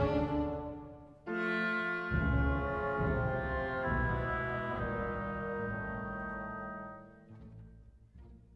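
Orchestral film score with brass, playing long held chords. A new, fuller chord comes in about a second in, with deep bass joining shortly after, and fades away near the end.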